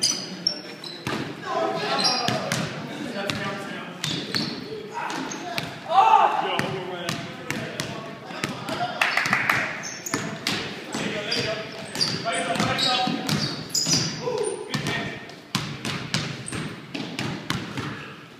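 Basketball bouncing on a hardwood gym floor in a pickup game: irregular dribbles and thuds, with players' voices calling out over them, the loudest call about six seconds in.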